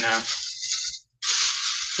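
Clear plastic bag crinkling as it is handled and rummaged through, a steady rustling hiss; the audio cuts out completely for a moment about a second in.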